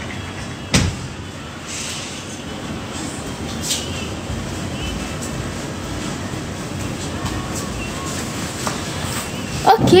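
Steady indoor room noise with one sharp knock just under a second in, and a few faint short sounds after it; a woman's voice returns at the very end.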